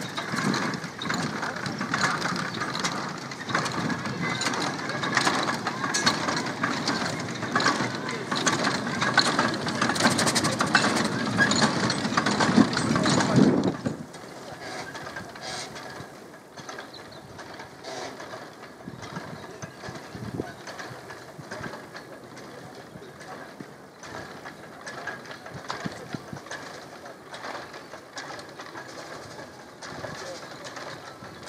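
Replica early steam locomotive running with its passenger carriage, a dense clattering mechanical noise. It is loud and close for about the first half, then drops suddenly to a quieter, more distant version of the same running sound as the engine approaches.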